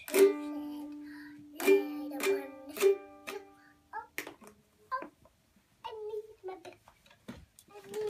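Ukulele strummed: one strum that rings out, then three quick strums about half a second apart, the chord ringing until about four seconds in. After that come scattered small knocks and a young child's voice.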